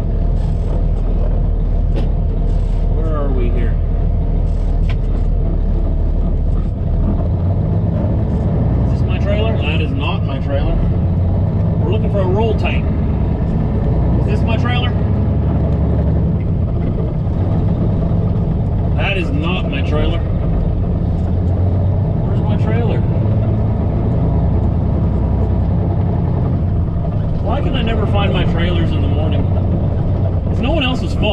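Semi truck's diesel engine running steadily as the tractor rolls slowly along, heard from inside the cab, with short pitched, voice-like sounds coming and going over it.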